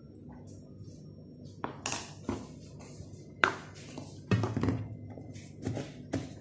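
Kitchen utensils tapping and knocking: about six sharp taps, the loudest about three and a half seconds in and a quick run of them around four and a half seconds, over a faint low hum.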